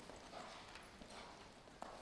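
Faint, soft hoofbeats of a horse walking on sand arena footing, about four steps in two seconds.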